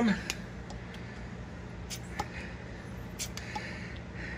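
Hand-held vacuum pump being squeezed, giving a few faint clicks spaced a second or more apart as it pulls vacuum on a distributor vacuum advance diaphragm. A steady low hum lies underneath.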